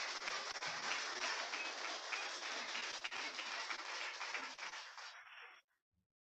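Audience applauding, a dense patter of many hands clapping that fades out and stops near the end.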